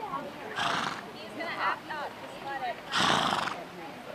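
A horse gives two short, loud blasts about two and a half seconds apart, the second louder, over people talking in the background.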